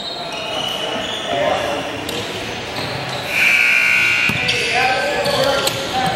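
Murmuring voices echoing in a gymnasium during a basketball game, with a few knocks. A loud, steady, high-pitched tone sounds for about a second and a half just past the middle.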